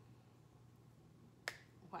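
Near silence: room tone, broken about one and a half seconds in by a single short, sharp click.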